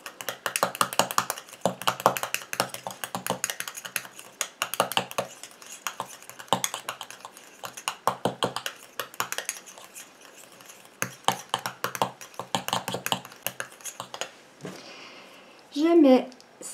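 Small spatula stirring a thick cream in a stainless steel bowl: rapid scraping and clicking against the metal, with a couple of short pauses in the last third.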